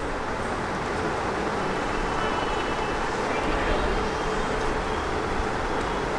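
A steady, even rush of background noise with no clear events in it.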